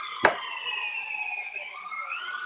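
An emergency-vehicle siren wailing, its pitch sliding slowly down and then starting to rise again near the end. A single sharp click about a quarter second in is the loudest sound.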